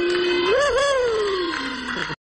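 One voice holding a long, drawn-out "ohhh" on a steady pitch. It wavers briefly about halfway through, then slides down in pitch.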